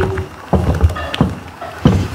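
A metal spoon stirring thick ugali (stiff maize porridge) in a metal pot. It knocks against the pot about four times, with the soft pasty scrape of the stirring between the knocks.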